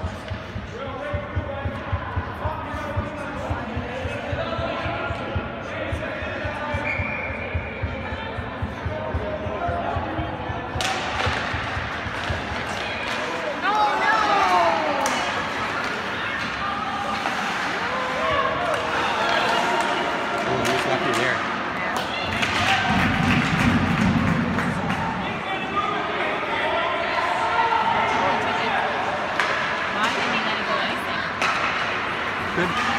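Ice hockey game sounds in an indoor rink: repeated sharp clacks and knocks of sticks, puck and boards, mixed with spectators' voices echoing in the arena.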